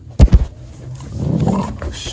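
Two sharp knocks right at the start, then a pit bull growling roughly as it tugs on a rope toy.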